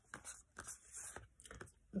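Faint rustling and light scraping of oracle cards being handled as the next card is drawn from the deck, in a run of short soft scrapes and ticks.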